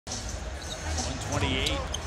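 Basketball being dribbled on a hardwood court, bouncing repeatedly under the steady noise of an arena crowd.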